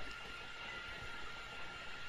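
Low, steady background hiss with a faint steady whine: the recording's noise floor, with no distinct events.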